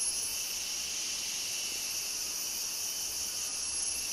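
Chorus of tropical rainforest insects: a steady, high-pitched, unbroken drone.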